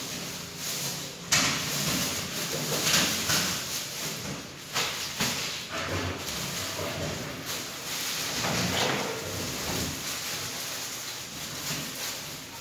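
Irregular bursts of rustling and sliding as curtains are hung on a metal curtain rod, with plastic packaging being handled. The first burst starts suddenly a little over a second in.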